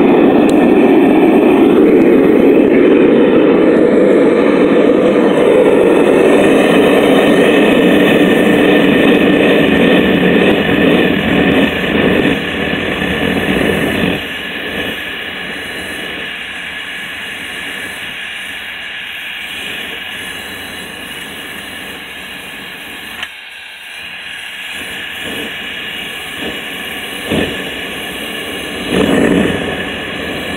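Propane burner of a Devil Forge melting furnace running at full blast, a steady jet-engine-like roar, with flame blowing out of the lid's vent. The roar drops noticeably about halfway through and stays quieter after that.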